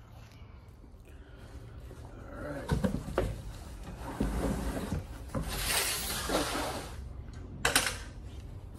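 Cardboard packaging being handled during unboxing: rustling and scraping of cardboard, with a few knocks and thumps as parts are lifted out.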